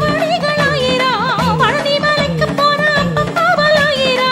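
Tamil devotional kavadi song: a voice sings a heavily ornamented melody, with wide swaying slides in pitch about a second in, over a steady rhythmic accompaniment.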